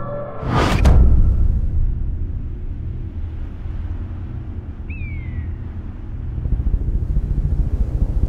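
Cinematic trailer sound design: a rising whoosh that peaks about a second in, then a low rumbling drone, with one short falling whistle-like tone near the middle.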